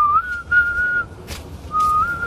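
A person whistling a tune: a short rising note that runs into a held, slightly wavering note, a brief break, then another long held note near the end.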